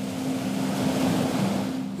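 Sea waves washing, a rushing noise that swells toward the middle and eases off, with a low steady hum underneath.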